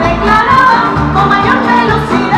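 Canarian parranda folk band playing live: accordion, laúd, guitars and electric bass, with a steady bass beat.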